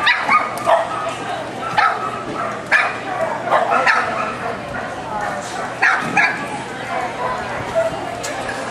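A dog barking repeatedly in short, sharp barks, about eight of them at uneven intervals, several close together near the start and a pair a little before the end.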